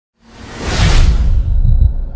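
Whoosh sound effect of a news channel's logo sting, swelling up from silence and peaking about a second in, with deep bass thuds underneath that carry on after the whoosh fades near the end.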